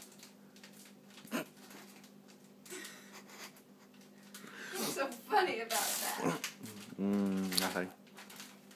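Human voices without clear words in the second half, with a short noisy burst in the middle and a held pitched vocal sound about a second long near the end. A faint steady hum runs underneath.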